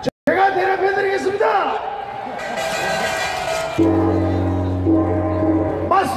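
Amplified voice over public-address loudspeakers, its pitch sliding in drawn-out phrases, then a steady low sustained chord from about four seconds in. The sound cuts out completely for a moment just after the start.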